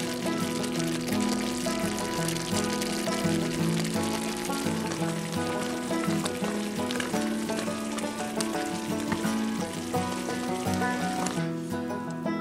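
Background instrumental music over sausage gravy simmering and sizzling in a skillet. The sizzle drops away near the end while the music carries on.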